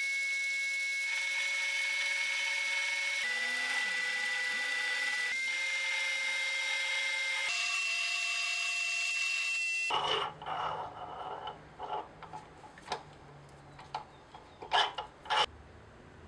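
Mini lathe running with a steady high-pitched whine as a tool cuts into a spinning steel rod, the pitch stepping slightly a few times. About ten seconds in the whine stops, leaving a low hum and scattered clicks.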